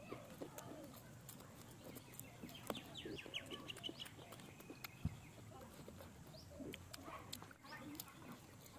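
Faint, scattered crackles and clicks of roasted chicken being torn apart by hand and eaten. Around the middle there is a quick run of short, high calls, like chickens clucking in the background.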